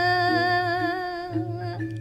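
A single voice singing one long held note of Balinese geguritan verse in pupuh Sinom, the pitch wavering slightly, fading away about a second and a half in.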